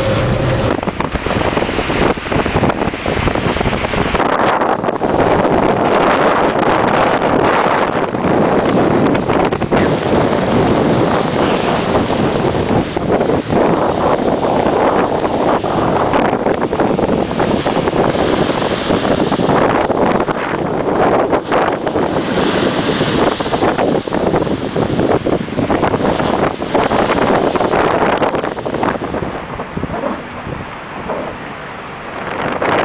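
A few seconds of car road noise, then strong hurricane wind buffeting the microphone: a loud rushing that surges and eases in gusts.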